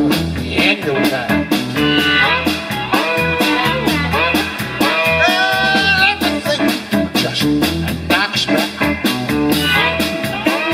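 Live electric blues band playing an instrumental stretch between sung verses: electric guitar over electric bass and drums keeping a steady beat, with a bent note in the lead line about five seconds in.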